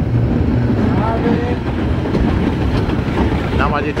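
Steady rumble of a metre-gauge electric train running along the track, heard from inside its rear cab, with snatches of talk in the cab.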